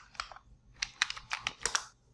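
Keystrokes on a computer keyboard: a few clicks at first, then a quick run of about ten keystrokes.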